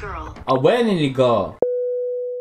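A single pure mid-pitched tone starts suddenly a little over a second and a half in and rings on, slowly fading: an edited-in sound effect, following speech.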